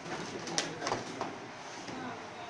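Three sharp clicks and taps over a busy room murmur, from small cardboard food boxes being handled and packed at a table.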